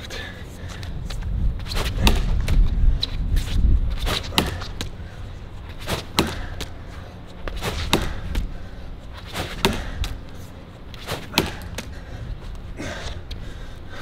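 Lacrosse ball thrown hard against a concrete wall and caught back in the stick, over and over: sharp knocks about every one and a half to two seconds, often in close pairs.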